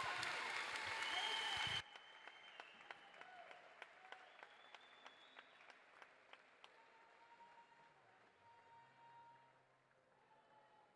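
Crowd applauding. The full applause cuts off sharply about two seconds in, leaving scattered single claps that thin out and fade.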